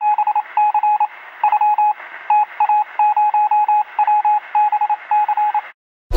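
A single beeping tone keyed in short and longer pulses, like Morse code, over a thin radio-style hiss. It cuts off abruptly shortly before the end.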